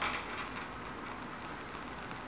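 Steady hiss of a lit Bunsen burner flame.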